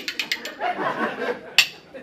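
A pair of curved spoons welded together, played as a percussion instrument in a fast Irish-style rhythm: a quick run of sharp metal clicks in the first half second, then one more click near the end.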